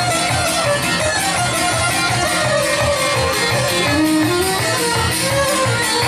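Live folk music: a violin plays the melody over a plucked string instrument strumming a steady, even beat.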